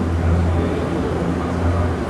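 A steady low hum with faint room noise over it.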